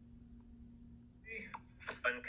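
Quiet room tone with a faint steady hum. About a second and a half in, a recorded man's voice starts playing back through the iPhone 12 mini's small built-in speaker, thin and without low end.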